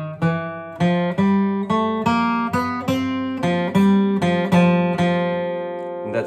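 Steel-string acoustic guitar, capoed and flatpicked: a lead lick mixing bass notes with ringing chord tones, about two to three picked notes a second, including a pull-off.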